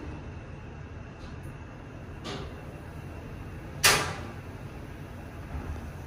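Inside an Otis Gen2 machine-room-less lift car travelling up: a steady low rumble of the ride, with a faint knock about two seconds in and a single sharp clack just before four seconds.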